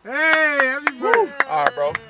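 Men's voices in a car: a drawn-out shout, then short excited exclamations, with several sharp smacks cutting through from about the middle on.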